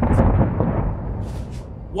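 Explosion sound effect: a sudden blast whose low rumble fades away over about two seconds.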